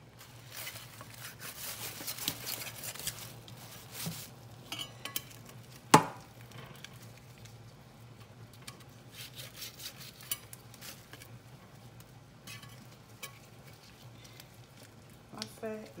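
Large kitchen knife cutting and scraping through a goat's head on a plastic bag in a stainless steel sink, with crinkling plastic and small scraping clicks. One sharp knock about six seconds in.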